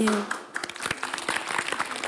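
Audience applause: many hands clapping, starting about half a second in.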